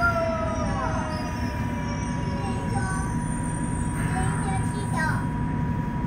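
Yokohama Municipal Subway 3000A train heard from inside the car: a steady rumble of running gear, with the Mitsubishi GTO-VVVF traction motors' whine falling in pitch near the start as the train slows to a stop beside another train.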